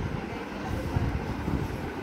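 Handling noise from a handheld phone being moved around: a low, uneven rumbling and rubbing on the microphone.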